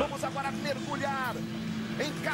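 Football TV broadcast playing quietly: a man's voice speaking briefly over a steady low hum.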